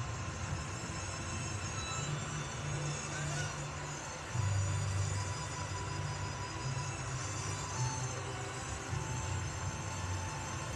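Television drama soundtrack played through a TV set's speaker and picked up across the room: soft background music over a steady hiss and low hum, growing a little louder about four seconds in.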